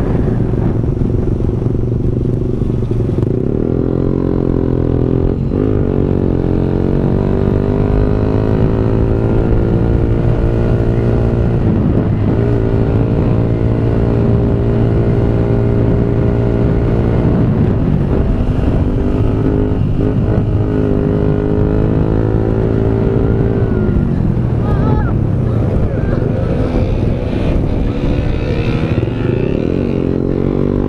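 Motorcycle engine running under way from the rider's seat. The revs climb and drop several times as the rider changes gear, about a dozen seconds apart at first and closer together near the end.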